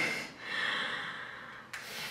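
A woman's breath into a close microphone: about a second of breathy rush between spoken words, with a faint click near the end.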